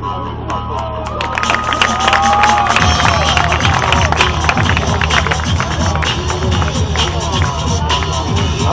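Crowd cheering and clapping over loud music with a heavy bass beat. The cheering and claps swell about a second and a half in, and the bass pattern changes about three seconds in.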